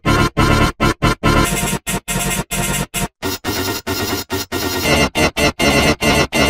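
Harsh, heavily pitch-shifted and layered edited audio, a clashing noisy wash of music and effects. It keeps cutting out in rapid stutters, about three short gaps a second, with a brief full dropout about halfway through.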